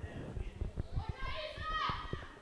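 High-pitched shouts and calls of women footballers on the pitch, heard from a distance, with one louder long call near the end. Irregular low thumps run underneath.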